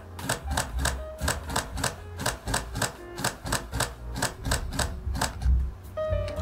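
Olympus OM-D E-M10 Mark II shutter firing in a continuous high-speed burst, a steady run of clicks at about five a second that stops near the end. The buffer is already full, so the camera is shooting at its slowed, buffered frame rate.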